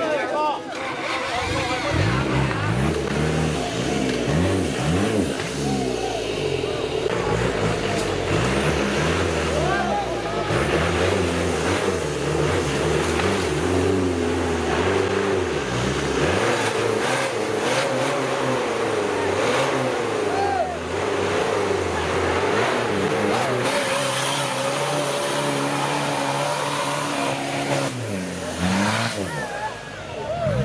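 Off-road 4x4 truck engine revving up and down under load as it works through deep mud, with spectators shouting over it.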